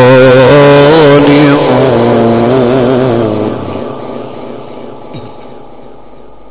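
A male reciter chanting the Quran in the melodic Egyptian style. He holds one long, wavering, ornamented note that ends about three and a half seconds in, then fades away to faint steady background noise.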